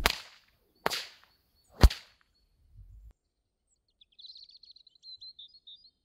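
A 16-plait, 6-foot kangaroo leather bullwhip being test-cracked: three sharp cracks about a second apart, the last the loudest. These are the test cracks that show the finished whip cracks with little effort.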